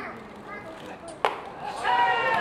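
A pitched baseball smacks into the catcher's mitt with one sharp pop about a second and a quarter in. Voices from the field and stands talk in the background, and drawn-out shouted calls begin near the end.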